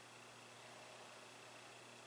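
Near silence: faint room tone with a steady low hum and hiss.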